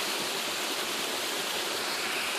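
Small creek waterfall pouring down a rock face onto boulders: a steady, even rush of falling water.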